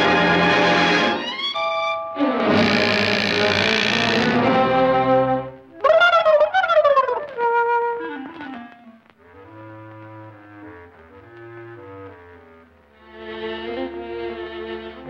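Orchestral cartoon score with prominent brass: loud, busy passages with a falling slide about six seconds in. The music then drops to soft, held chords before swelling again near the end.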